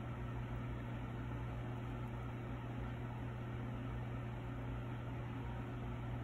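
A steady low hum under a faint, even hiss, with no distinct event: background room tone.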